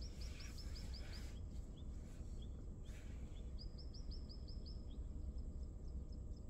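Bird calls from a nature video playing on the dashboard tablet: two quick runs of about seven short, high chirps, one near the start and one about halfway through, with a few single chirps between. A steady low rumble sits underneath.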